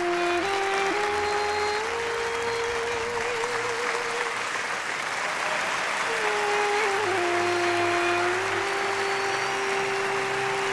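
Audience applauding steadily over slow music, a melody of long held notes with a wavering note about three seconds in.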